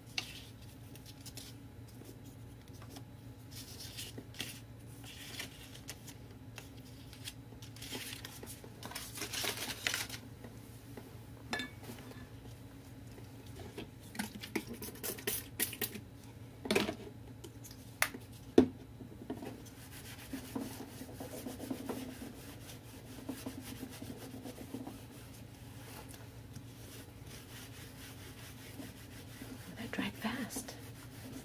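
Intermittent rubbing and scraping of hands working with paper and craft materials on a tabletop, with two sharp knocks about two-thirds of the way through, over a steady low hum.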